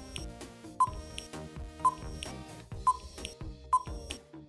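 Quiz countdown-timer sound effect: short high beeps about once a second over light background music.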